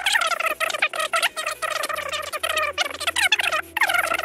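A high-pitched, rapidly warbling voice-like sound over background music with a steady low bass line.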